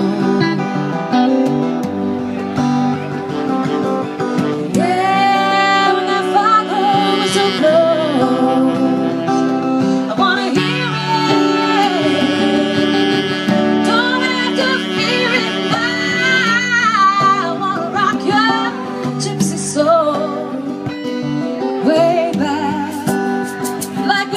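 Live band music: a woman singing long, sliding notes over strummed acoustic guitar and electric guitar.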